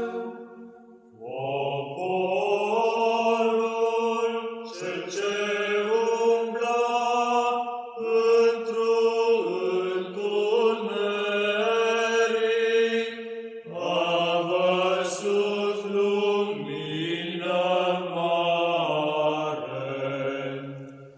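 Slow vocal church chant: long held sung notes in several phrases, with a brief pause about a second in and new phrases beginning every few seconds.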